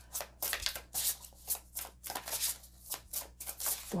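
An oracle card deck being shuffled by hand, a run of irregular shuffling strokes about four a second.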